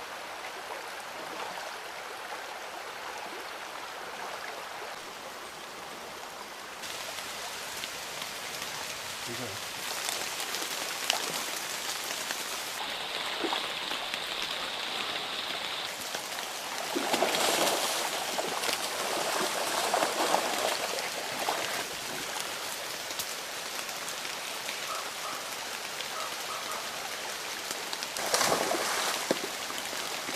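Shallow rocky stream running steadily, with louder splashing as a white-coated black bear wades through and plunges its head into the water after salmon, once about halfway through and again near the end.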